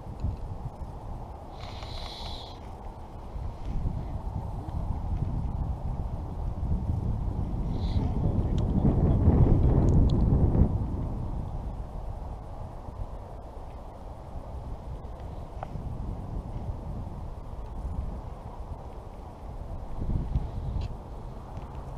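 Wind buffeting the body-mounted camera's microphone: a low rumble that swells to its loudest about halfway through, then eases off. A short higher-pitched sound comes about two seconds in.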